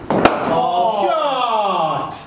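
A single sharp knock about a quarter second in, then a person's voice sliding steadily down in pitch for about a second and a half.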